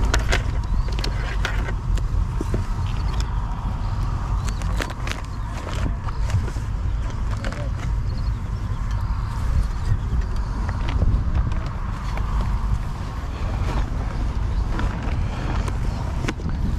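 Open-air ambience: a steady low rumble of wind on the microphone, with faint background voices and a few light clicks.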